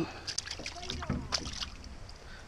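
Scattered light knocks and clicks of a small fish and a hand against the floor of a rowboat as the catch is handled and unhooked.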